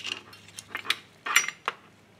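A few short, light clicks and taps from the small fan motor's stator and plastic winding frame being handled and turned over by hand.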